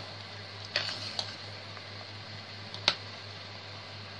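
A metal spoon knocking lightly against a stainless steel pot of boiling strawberries and sugar: three short clicks, the loudest about three seconds in, over a steady low hiss.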